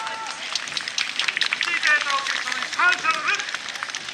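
Scattered voices calling out, with short rising-and-falling shouts and a scattering of sharp taps, once the dance music has stopped.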